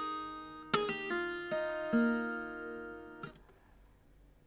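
Acoustic guitar fingerpicked: a few plucked notes of an E-flat chord sound one after another and ring out, fading away, with a brief muted touch on the strings about three seconds in.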